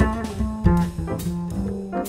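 Jazz piano trio playing a waltz: piano, double bass and drums, with the double bass prominent and a couple of sharp cymbal strokes about two-thirds of a second and a little over a second in.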